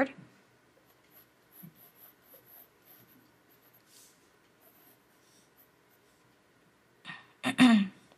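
Faint scratching of a mechanical pencil on paper in short, scattered sketching strokes. Near the end comes a brief, louder voiced sound, a murmur or short word.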